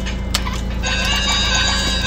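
Electronic music with high, steady beeping tones setting in about a second in, over a steady low hum, with a single click shortly before.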